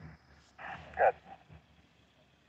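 Two short animal calls about half a second apart, the second the louder, over a low background hum.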